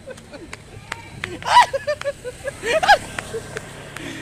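Two short human vocal exclamations, one about a second and a half in and one near three seconds, over a low steady background hum.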